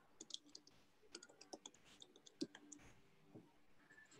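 Faint, irregular clicking of someone working at a computer, about a dozen light clicks with the loudest a little past the middle.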